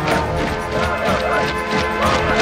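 Film score music over a rapid, uneven clatter of impacts from a riot-police formation advancing with shields.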